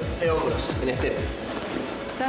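Upbeat workout music with a steady, fast low beat and a singing voice over it.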